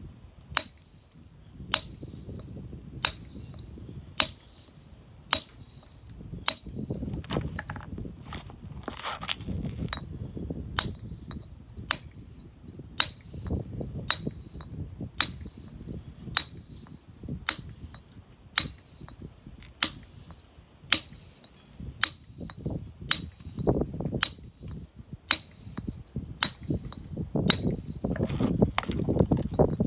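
Steel hand chisel on granite struck with a hand hammer at an even pace, about one blow a second. Each blow gives a sharp metallic clink.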